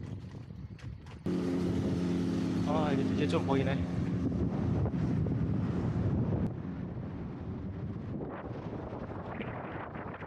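Wind noise on a bicycle-mounted action camera's microphone while riding. About a second in it jumps louder, with a steady low hum of several tones for a few seconds before settling back to the lower rushing noise.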